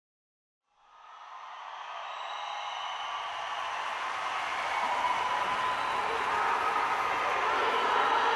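Steady noisy ambience that fades in from silence about a second in and slowly grows louder.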